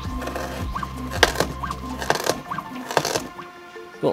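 Background music, with about three sharp knocks of a robot-driven kitchen knife chopping through a carrot onto a wooden cutting board, roughly a second apart. The music's bass drops out about two seconds in.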